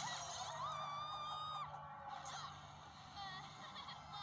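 Cartoon soundtrack: a voice holds one long high cry for about a second, then shorter wavering pitched sounds follow, over background music.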